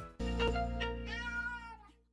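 Domestic cat meowing: two short meows, then one longer drawn-out meow, over a low held music note that fades away near the end.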